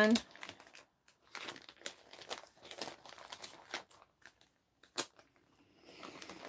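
Clear plastic sheet protectors in a binder crinkling and rustling as pages and pockets are handled, with one sharp click about five seconds in.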